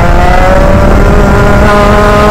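Rotax Max 125 single-cylinder two-stroke kart engine running hard, its pitch climbing slowly as the kart accelerates through a bend. Heard up close from the driver's helmet.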